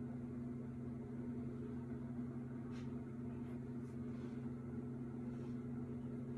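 A steady low hum throughout, with a few faint brushing strokes of a comb teasing hair around the middle.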